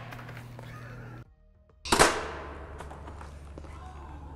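One sharp knock about two seconds in, ringing out and fading over a second or two, above a low steady hum.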